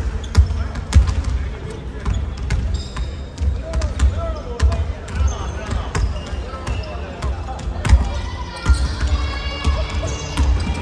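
Several basketballs bouncing on a hardwood gym floor, a scatter of thumps at uneven intervals from players dribbling and shooting at once, with voices in a large hall.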